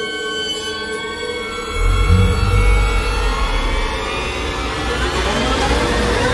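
Eerie sci-fi film score and sound design: held drone tones, then a deep rumble swells in about two seconds in, with a rising hissing wash building over it.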